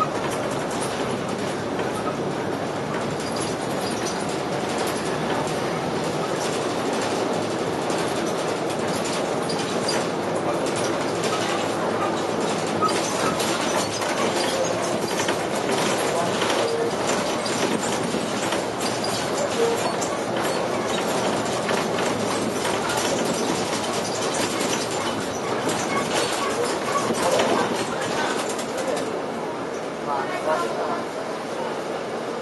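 Cabin noise of a King Long KLQ6116G city bus under way: the engine and road noise run steadily, with many small rattles and clicks from the body and fittings.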